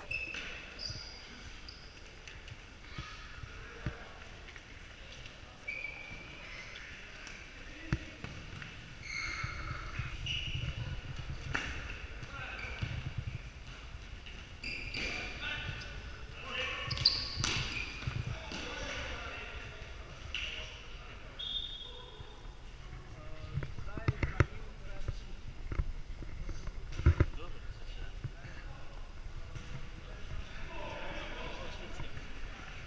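Futsal being played on an indoor wooden court: the ball being struck, giving several sharp knocks, amid short high shoe squeaks on the floor and players calling out.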